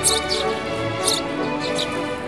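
Eurasian tree sparrows giving several short, high chirps, the loudest right at the start and about a second in, over steady background music.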